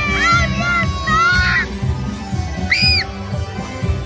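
Parade music with a steady beat and gliding synthesizer-like notes, playing from a passing lit parade float, over crowd voices and children calling out.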